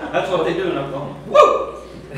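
Voices talking in a large room, with one short, loud vocal outburst about one and a half seconds in.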